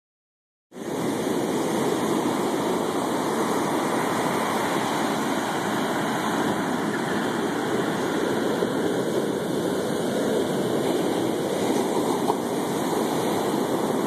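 Ocean surf breaking on a sandy beach: a steady, unbroken rush of waves.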